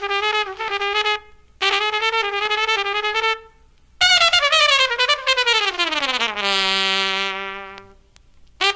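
Live Dixieland trumpet played back from a vinyl LP. It plays two held, wavering phrases with short breaks between them, then a long note that slides down in pitch and holds low.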